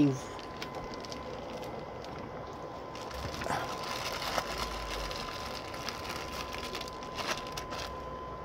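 Faint rustling of a clear plastic bag and light handling as the wrapped body is lowered into a hole in the soil, with a few small clicks. Under it runs a steady background hiss with a constant thin high tone and a low rumble.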